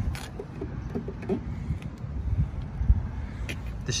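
Low, uneven outdoor rumble with faint knocks, and one sharper knock about three seconds in.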